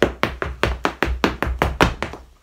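Irish dance hard shoes striking a floor mat in a quick run of sharp taps and clicks, about six a second in an uneven rhythm, as a section of a hornpipe step is danced.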